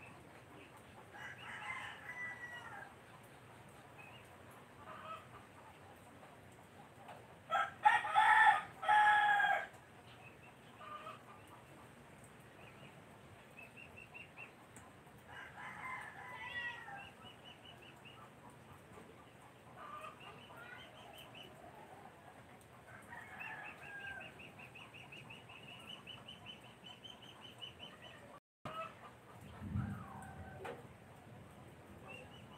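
A rooster crowing loudly about eight seconds in, with fainter chicken calls at intervals before and after. A fast, high-pitched chirping trill repeats several times in the second half.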